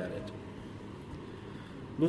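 Room tone in a pause between spoken sentences: a steady, faint low hum and hiss, with no distinct event.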